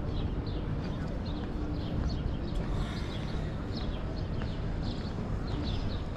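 Small birds chirping repeatedly, short high falling notes two or three times a second, over a steady low rumble.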